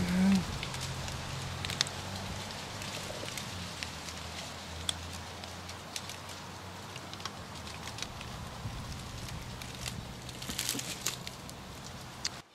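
Honeybees humming steadily and low, with scattered small clicks and crackles from fingers handling a wire-mesh queen cage holding queen cells, a cluster of clicks near the end.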